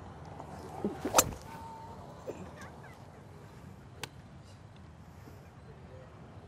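Callaway Epic Flash 3-wood striking a golf ball off a range mat: one sharp, loud crack of impact a little over a second in, followed by a fainter click about four seconds in.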